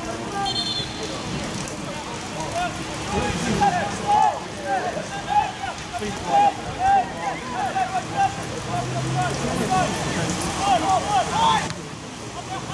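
Steady rain falling, with many short distant shouts and calls from players on the pitch coming one after another.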